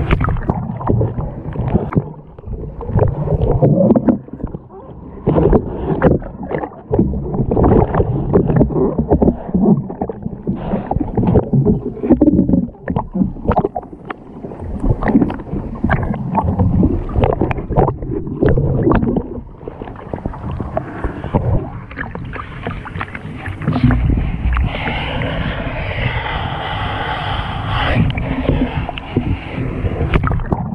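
Water sloshing and splashing around a canoe as it capsizes and floods, heard through a camera partly underwater, so it sounds muffled, with many irregular knocks and splashes. Near the end a steadier rushing sound takes over.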